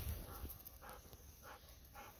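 Golden retriever nosing at a handful of chestnuts close to the microphone: four short, faint dog sounds about half a second apart.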